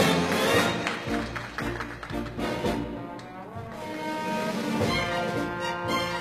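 Orchestral music with prominent brass, dipping in loudness about halfway through.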